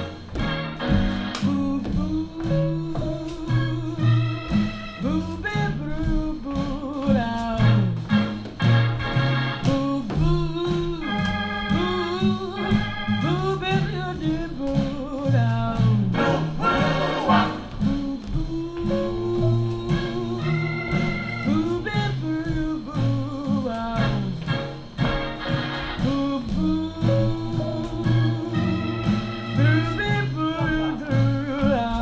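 Swing jazz song with a singing voice and organ over a steady beat.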